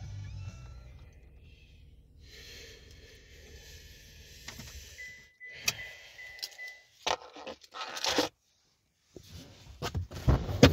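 Music from the truck's radio fading out as the volume is turned down, then a quiet cabin with scattered clicks and a jangle of keys. A steady high beep sounds about five seconds in for under two seconds, and a few sharp knocks and clicks follow near the end.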